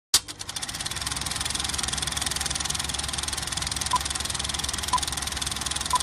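Film projector running, a fast, even mechanical clatter that starts suddenly just after the opening. Three short beeps a second apart sound over it in the second half.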